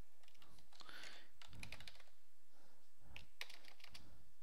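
Computer keyboard keys typing in a few short runs of clicks, as a search term is entered.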